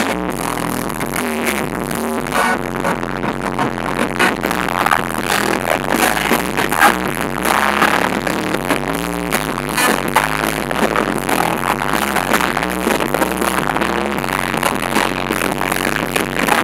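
Loud amplified live music through a concert PA, with a group of singers on microphones over a dance beat.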